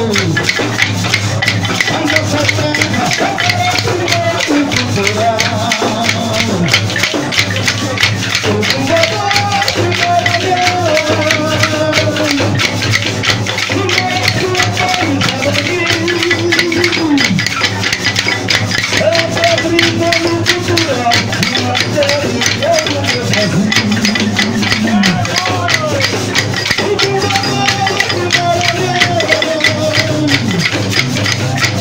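A man's amplified voice singing a bumba-meu-boi toada over a dense, unbroken clatter of matracas, the hand-held wooden clappers of the sotaque de matraca style.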